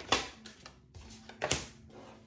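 Tarot cards being handled and turned over on a desk: a few short, sharp card snaps and taps, the loudest just after the start and another about a second and a half in.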